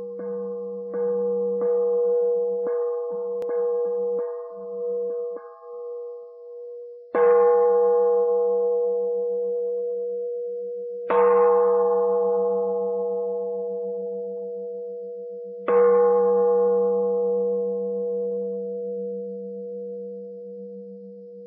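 A struck metal bowl bell, like a Buddhist singing bowl. It is tapped lightly in a quick run of about eight strikes over the first five seconds, then struck hard three times about four seconds apart. Each strike leaves a long, slowly fading ring over a wavering low hum.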